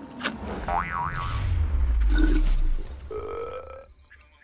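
Cartoon sound effects: a tone wobbling up and down about a second in, then a deep whooshing rumble, the loudest part, and a short rising tone near the end.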